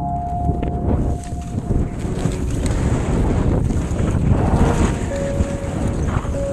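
Wind rushing over an action camera's microphone on a downhill ski run, mixed with the skis running through snow. Faint music notes carry on underneath.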